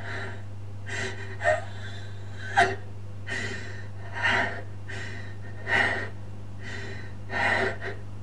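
A person breathing heavily and audibly, in quick breaths about once a second, some of them sharp and catching.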